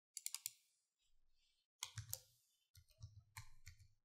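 Faint clicks of computer keyboard keys as a word is typed, in three short runs of a few keystrokes each.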